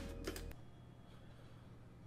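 A faint low sound, the tail of background audio, cuts off about half a second in, then near silence: room tone.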